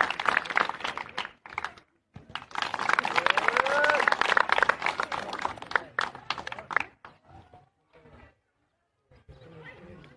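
A crowd of onlookers clapping and cheering in two bursts, with a brief break about two seconds in; it dies down after about seven seconds to scattered voices.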